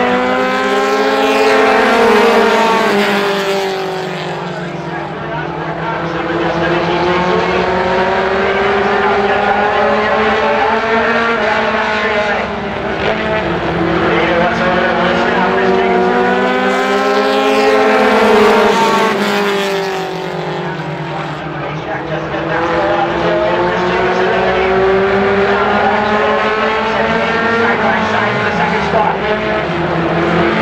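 Several short-track stock cars racing in a pack, their engines running hard and rising and falling in pitch together about every eight seconds as they lap the oval.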